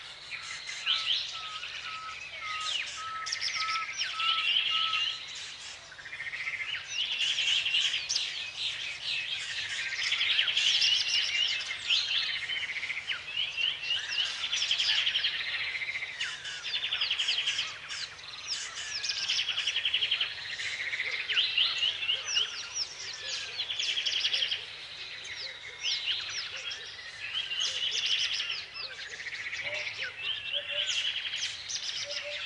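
Several birds singing and chirping at once, their songs overlapping continuously, with a run of short, evenly spaced lower notes in the first few seconds.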